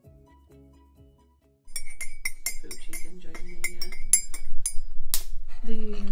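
Faint background music, then from about two seconds in a metal teaspoon stirring tea in a ceramic mug, clinking rapidly against the sides, several clinks a second.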